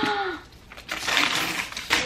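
Wrapping paper tearing and crinkling as a gift is ripped open, for about a second in the middle, after a short vocal exclamation at the start.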